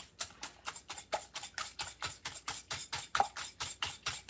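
A fork beating eggs and condensed milk in a glass mixing bowl: a quick, steady run of clicks against the glass, about five or six strokes a second.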